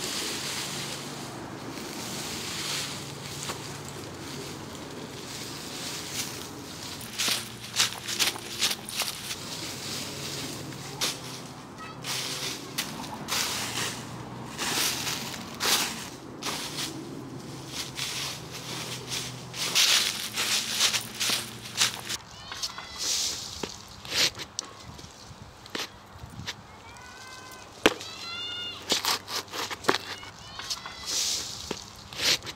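Dry fallen leaves crunching and rustling as hands scoop and crush them, with many sharp crackles. Later the sound thins to scattered clicks, with a short run of rising chirps near the end.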